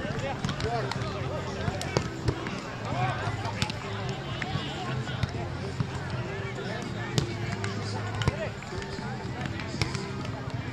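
Overlapping chatter of many voices around the court, with a few sharp slaps of a volleyball being struck by hands and forearms, about two seconds in, again around three and a half seconds, and twice near the end.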